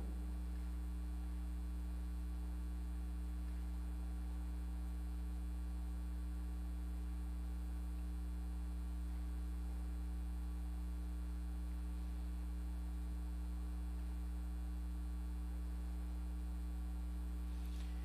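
Steady, low-pitched electrical mains hum with fainter higher tones above it. Nothing else sounds over it.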